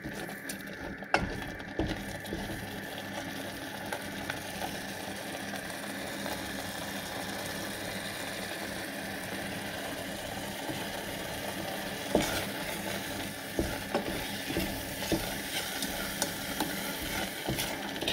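Eggs and feta sizzling in oil in a stainless steel pot, a steady hiss, while a wooden spoon stirs them. Now and then the spoon knocks lightly against the pot, more often in the second half.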